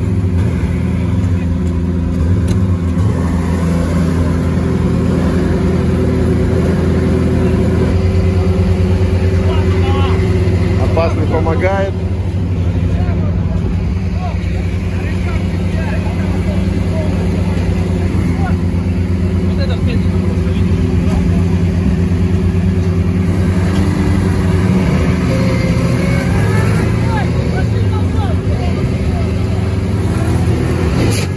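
Lada Niva off-road car engine running in deep mud, its revs shifting a little early on and then holding steady, with voices around it.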